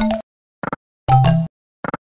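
Sound effects from the EGT video slot 100 Burning Hot: short clicks as the reels spin and stop, with brief electronic chiming tones for small wins at the start and about a second in.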